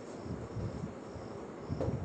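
Room tone with a faint, steady high-pitched chirring over low background noise, and a soft low thump near the end.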